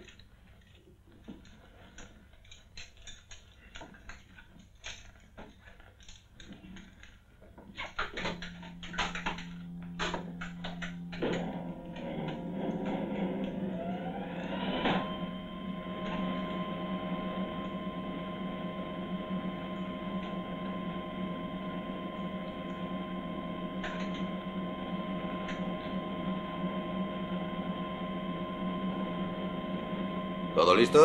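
Scattered faint clicks, then a low steady hum starts about eight seconds in. More tones join, glide upward for a few seconds and settle into a steady drone of several tones: the rocket's machinery powering up before launch.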